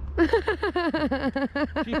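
A person's high-pitched voice in a quick run of short, repeated syllables, about six a second, with one spoken word at the very end.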